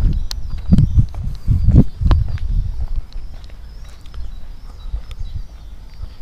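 Footsteps of someone walking on paving while carrying an action camera, with thumps of the camera being jostled. The thumps are heavier in the first two seconds, then lighter and quieter.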